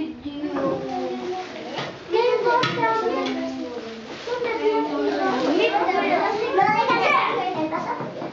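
A group of young children chattering at once: many high voices talking and calling out over one another in a steady babble.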